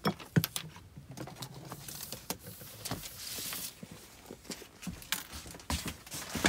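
Hand-packing noises: scattered clicks and light knocks of items being handled, with a short rustle of a plastic mailer or paper about three seconds in.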